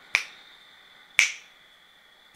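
Finger snaps, two sharp snaps about a second apart, each dying away quickly, keeping time for the breath count, over a faint steady high tone.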